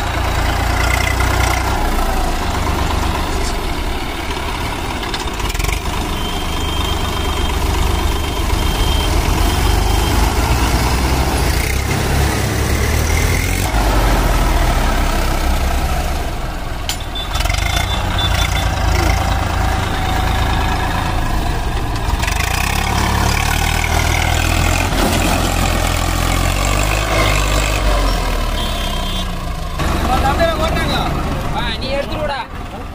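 Swaraj 744 FE tractor's three-cylinder diesel engine running steadily as the tractor drives over rough ground, rising and falling a little in loudness.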